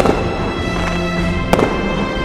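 Fireworks bursting over music: two sharp bangs, one at the start and one about a second and a half in, each trailing a short echo, with steady music throughout.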